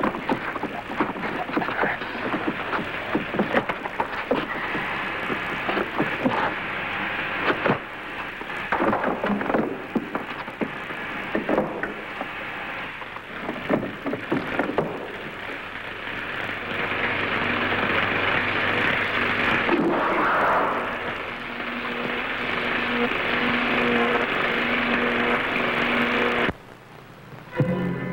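Film soundtrack of music under a dense, steady rushing and crackling sound effect, with steady low tones joining in the second half; it cuts out briefly about a second before the end.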